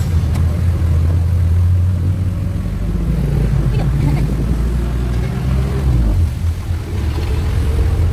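Engine rumble and road noise heard from inside an open-sided passenger vehicle riding along a street, steady with a brief dip about six seconds in.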